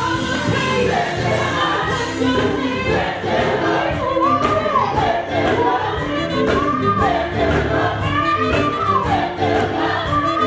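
Gospel mass choir singing in full harmony, backed by a live band with a steady drum beat.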